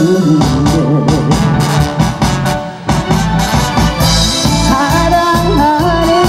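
Live band playing an instrumental passage of a Korean song, with a steady drum beat, sustained bass notes and a keyboard melody over it.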